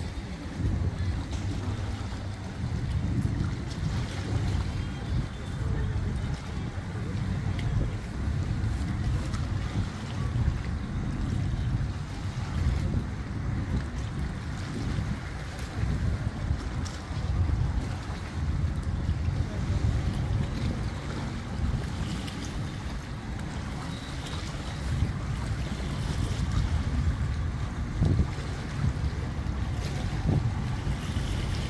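Wind buffeting the microphone, a gusty low rumble, over the wash of lake water at the shore.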